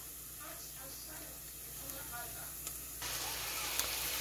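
Seasoned raw shrimp sizzling in a hot pot of onions and peppers: a steady frying hiss that starts suddenly about three seconds in.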